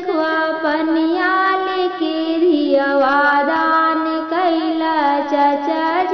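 Bhojpuri wedding song (kanyadan vivah geet) playing: a high melodic line of long held notes that bend and glide between pitches, over the song's accompaniment.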